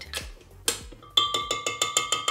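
A stand mixer's wire whisk attachment is tapped rapidly against the rim of a glass mixing bowl to knock off cake batter. One knock comes first, then from about a second in a quick, even run of about seven taps a second, with the glass ringing.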